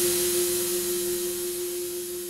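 ATV aFrame electronic frame drums left ringing after a hit: one steady mid-pitched tone under a hissing wash, slowly fading.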